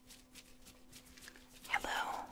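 A short whisper close to the microphone near the end, over faint rustling of latex-gloved fingers wiggling by the other ear.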